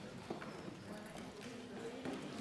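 Low background murmur of voices in a large debating chamber, with a few scattered light knocks and clicks, the sharpest about a third of a second in.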